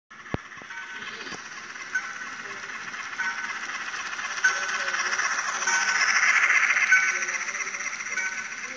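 Model train running on a curve of track toward and past the camera: a steady rattling whir of the locomotive's motor and the wheels on the rails, growing louder as the engine draws near, with a faint tick repeating about every second and a quarter. A sharp click sounds near the start.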